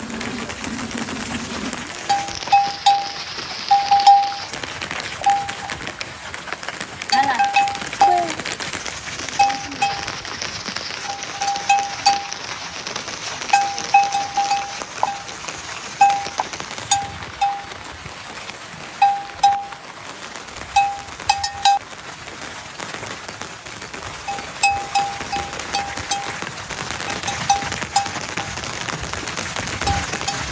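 A small livestock neck bell clinking in short, irregular rings of one fixed pitch as the animals move, over a steady patter of rain.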